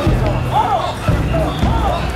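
A crowd of mikoshi bearers chanting together in rhythm, many voices rising and falling in unison, with low thuds falling about every half second to a second.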